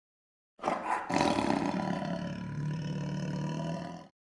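A tiger's roar, used as a sound effect: it starts about half a second in, loudest in its first second, then settles into a long, lower roar that stops abruptly at the end.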